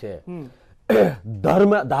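A man speaking in a studio debate, with a throat clearing about a second in.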